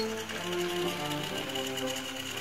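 Small battery-powered motors of several TrackMaster toy engines whirring with a fast, even buzz as they run along plastic track, over background music.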